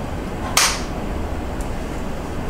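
A single brief, sharp noise about half a second in, over a steady low hum.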